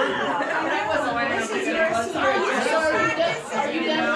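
Several people talking at once: overlapping conversation.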